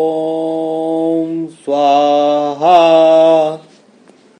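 A male voice chanting a mantra in long held notes. One long steady note breaks off about a second and a half in, then come two shorter held notes, the last rising at its start, and the chant fades out just before the end.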